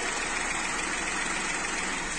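Peugeot 301 engine idling steadily in the open engine bay. After the ECU repair it runs evenly, no longer on only two cylinders, and is called well tuned ("réglée").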